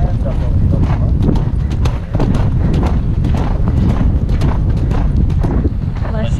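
Hoofbeats of a horse moving at speed over turf, an uneven run of sharp thuds, over a steady rumble of wind on the helmet-mounted microphone.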